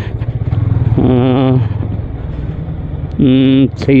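Yamaha motorcycle engine running steadily at low riding speed, a low hum throughout. A man's voice comes over it briefly twice, about a second in and near the end.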